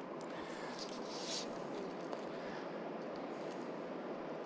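Steady, quiet outdoor ambience: an even hiss with no distinct events, with a faint higher hiss swelling briefly about a second in.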